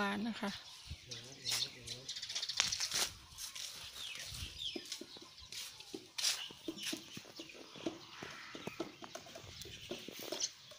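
An elephant feeding on chopped banana stems: many short crackles and snaps as the fibrous stalks are picked up, torn and chewed.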